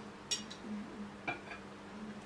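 Metal spoon and fork clinking against a plate: one sharp clink about a third of a second in, then a pair of lighter clicks about a second later, over a steady low hum.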